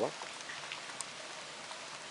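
Steady rain falling on forest vegetation: an even hiss, with a single faint tick about a second in.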